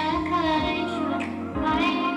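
Female idol group singing a pop song over backing music with a steady beat, played loud through stage PA speakers.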